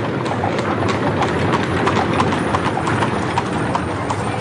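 A crowd on the move: a dense, irregular clatter of sharp steps on a hard street, several clacks a second, over a steady murmur.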